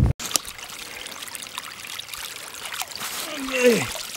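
Water trickling and splashing as a drowned beaver is hauled out of a pond, with many small splashes and drips. Near the end a man's voice gives a short sound that falls in pitch.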